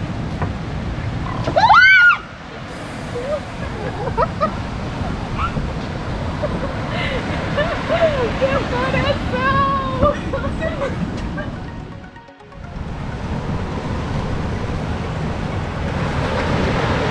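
A woman's sudden short scream of fright about two seconds in, then laughing and excited talk, over a steady wash of surf and wind noise.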